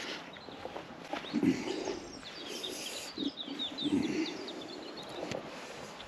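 A small bird twittering outdoors: a quick run of high chirps about two to three seconds in, with a few soft low thuds.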